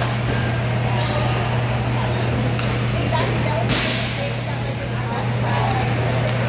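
Inline hockey play on a plastic-tile rink: sticks clacking on the puck, with one sharp, louder crack of stick or puck a little past halfway. A steady low hum runs underneath.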